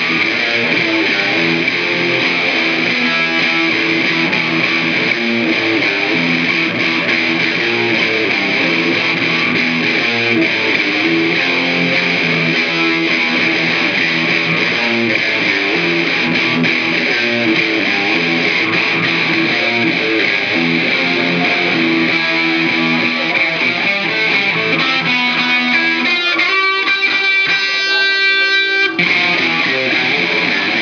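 Electric guitar played loud through an amplifier, unaccompanied, with no drums or bass, strumming repeating riffs. Near the end the playing changes to ringing sustained notes, then breaks off briefly.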